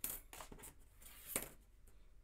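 Thin metal cutting dies clinking lightly as they are handled on the craft mat: a few short metallic clicks, the loudest about one and a half seconds in.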